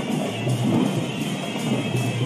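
Sri Lankan perahera procession music: traditional drums and percussion playing steadily, with a thin high tone held over them.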